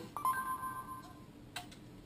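Short electronic beep tones from an Android tablet's Google voice-recognition prompt as the spoken command is taken, fading within about a second, followed by a single sharp click about a second and a half in.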